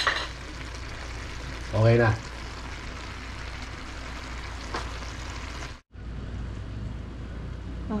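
String beans in adobo sauce, fully cooked, sizzling in a wok with a steady frying hiss. The hiss drops out for a moment near the end.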